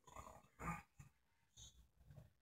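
Beer faintly glugging in short, irregular spurts as it is poured from an aluminium can into a glass mug.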